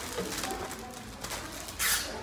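Clear plastic bags and paper sheets handled and rustled at a table, with one short, loud crinkle near the end.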